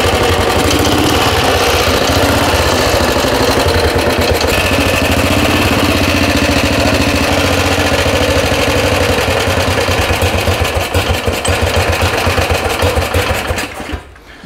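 1936 Calthorpe M4 500 cc OHV single-cylinder motorcycle engine, a Special Competition model with high compression and an upswept exhaust, running loud and steady. Over the last few seconds it runs unevenly and then dies, out of the petrol that was poured straight into the carburettor.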